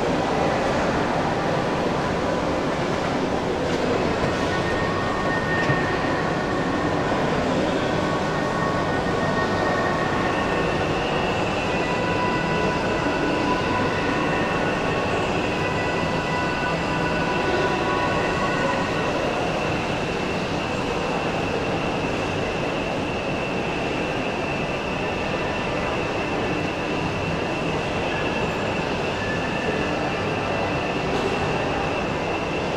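Steady, fairly loud mechanical running noise with a few thin, high whining tones that come and go; one whine holds steady from about a third of the way in.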